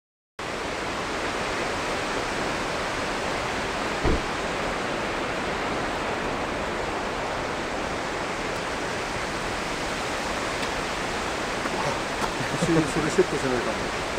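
A steady, even rushing noise that holds at one level throughout, with a short thump about four seconds in and voices coming in near the end.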